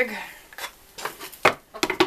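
Wooden sand-casting flask being handled and set on the molding bench: a few sharp wooden knocks and clatters, the loudest about one and a half seconds in.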